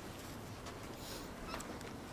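Quiet room tone of a large library hall: a steady faint hiss with a few small clicks about one and a half seconds in.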